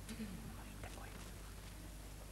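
A brief, faint whispered or murmured voice early on, with a few soft clicks, over a steady low electrical hum.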